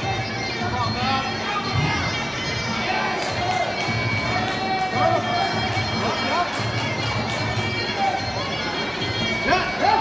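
Traditional Muay Thai ring music playing, a reedy wind instrument holding long notes over a steady drum beat, with crowd voices and shouts. At the very end the crowd noise jumps up into cheering.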